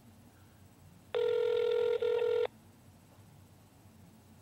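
Telephone ringback tone heard over the phone line: one steady ring about a second and a half long, starting about a second in, the signal that the called phone is ringing.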